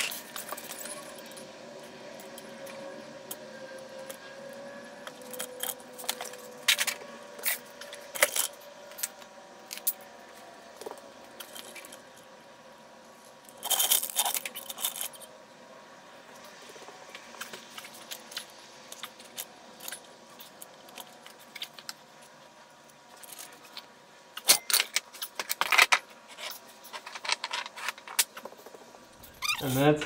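Scattered sharp metallic clinks and knocks from an automatic transmission being let down on a hydraulic floor jack, over a faint background. Louder clusters come about 14 seconds in and again around 25 seconds.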